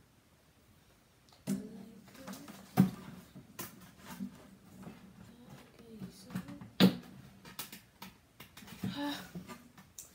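Clicks and knocks of hands rummaging through a crested gecko's enclosure and its wooden decor, starting about a second and a half in, with two sharper knocks about three and seven seconds in. A faint low voice sounds underneath.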